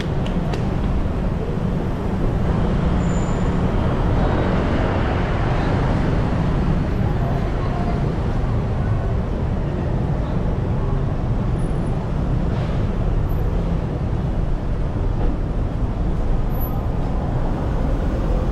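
Steady city traffic noise: a continuous low rumble of cars idling and moving past on a busy road.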